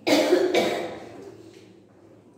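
A woman coughing twice into her hand, the second cough about half a second after the first.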